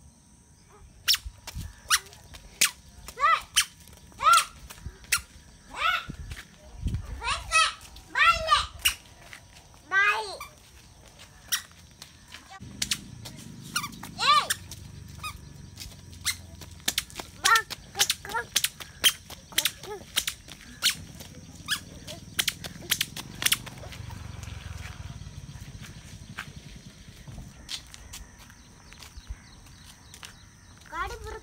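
A puppy on a leash giving short, high squeaks and whimpers in scattered bursts, mostly in the first half, among many sharp clicks.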